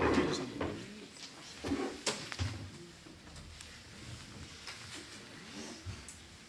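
Room noise in a meeting hall: faint murmuring voices away from the microphones and a few short knocks or clicks, the loudest around two seconds in.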